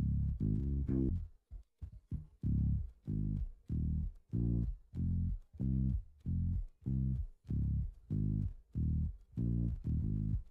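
An isolated bass guitar line, pulled out of a full mix by Logic Pro's AI stem separation, playing short detached notes about two a second, with a brief pause early in the line. The tone comes through close to the original take.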